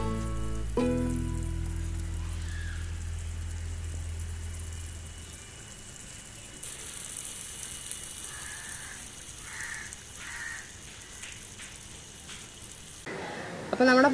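Background music with a low bass line that fades out in the first few seconds, then beef roast bubbling and sizzling in a clay pot as a steady hiss from about halfway through until just before the end.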